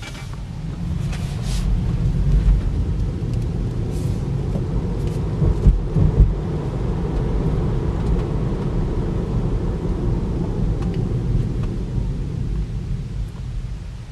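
Road and tyre rumble inside the cabin of a Tesla Model 3 electric car on the move, building up over the first couple of seconds as it gathers speed. Two short thumps come about six seconds in.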